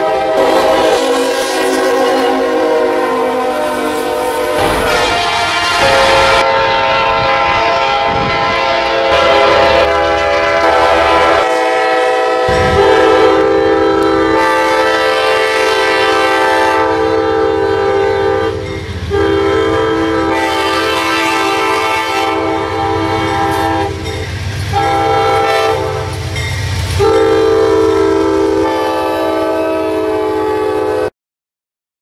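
Diesel locomotive five-chime K5LA air horns sounding long, loud chords. The chord changes abruptly twice in the first half, and there are several short breaks between blasts in the second half.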